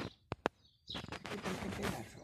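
Small birds chirping briefly, with two sharp clicks near the start and a loud rushing noise through the second half.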